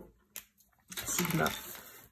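A single sharp click as the cap is pulled off a Micron fineliner pen, followed about half a second later by a stretch of rustling handling noise.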